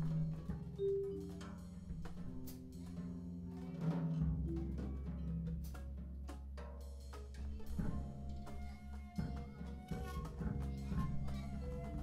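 Free-jazz group improvisation: loose drum-kit strikes and cymbal hits over held low notes and wandering melodic lines, with a deep low note coming in about four seconds in.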